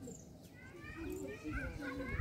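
Indistinct people's voices talking.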